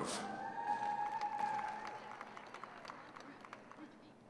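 Scattered applause from a sparse arena crowd, individual claps dying away over the few seconds, with one long held cheer in the first half.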